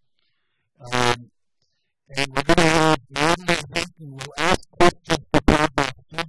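A man speaking into a microphone in short phrases: one brief word about a second in, then steady talk after a pause.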